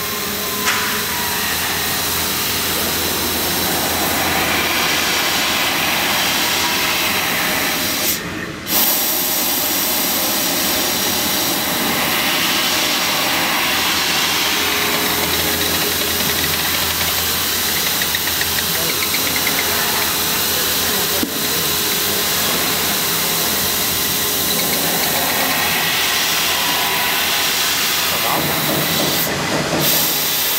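Fiber laser cutting machine cutting sheet steel: a steady loud hiss with machine noise under it. The hiss drops out briefly about eight seconds in and again just before the end.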